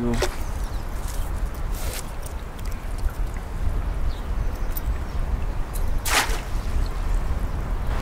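Water dripping and splashing as a wire-mesh funnel crayfish trap is handled over a pond's edge, with two brief louder splashes, about two seconds in and about six seconds in, over a steady low rumble.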